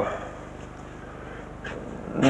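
Quiet lecture-room tone with a steady low electrical hum, during a pause in speech. A man's drawn-out 'uh' ends right at the start.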